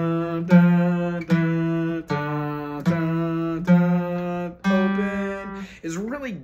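Acoustic guitar strummed in a steady rhythm, one chord stroke about every three quarters of a second, each left ringing. It is sounding a D minor chord with F in the bass and its moving note.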